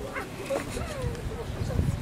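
Indistinct distant voices of people talking, over a low wind rumble on the microphone that swells near the end.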